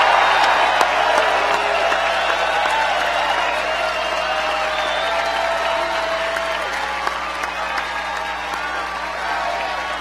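Large rally crowd cheering and applauding, loudest at the start and slowly easing off.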